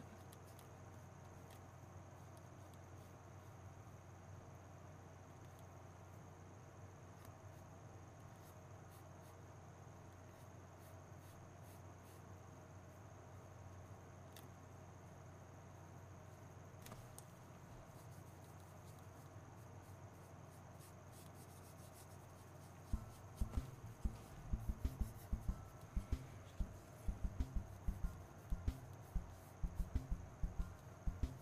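Faint steady electrical hum with a thin high whine. About two-thirds of the way in, a run of soft, low taps begins, several a second and uneven: a paintbrush dabbing acrylic paint onto the painting board.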